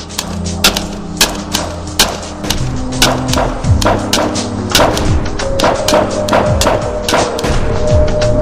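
Music: low held tones under a run of irregular sharp knocks and thuds, a few of the thuds falling in pitch; a higher held tone comes in a little past halfway.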